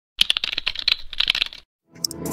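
Computer keyboard typing sound effect: a rapid run of clicking keystrokes that stops about a second and a half in.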